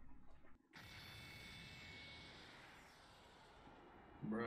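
Near silence: a faint steady hiss with a few thin high tones, after a brief dropout about half a second in.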